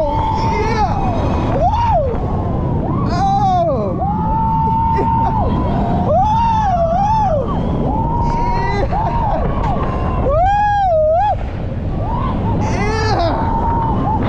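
Roller coaster riders screaming and yelling in a string of long, wavering cries, one after another. Under them runs a steady low rumble from wind on the microphone and the Valravn dive coaster train running on its track.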